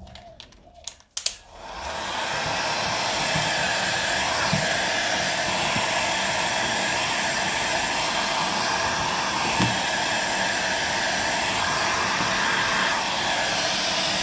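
Handheld electric heat gun switched on with a click about a second in, its fan coming up to speed and then blowing steadily, used to soften a vinyl sticker kit on a go-kart cowling.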